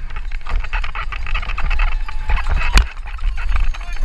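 Santa Cruz Nomad mountain bike clattering and rattling over rough, rocky trail at speed, with wind buffeting the camera microphone as a constant low rumble. A single sharp knock comes about three quarters of the way in.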